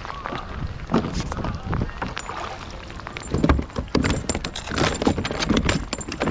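Irregular knocks, clicks and rattles against a plastic kayak, with some splashing, as a hooked fish is brought to the boat; the knocks come thicker over the last few seconds.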